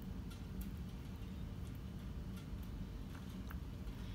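Silicone whisk scraping thick white sauce out of a saucepan onto pasta in a glass baking dish: faint, scattered light clicks and taps over a low steady hum.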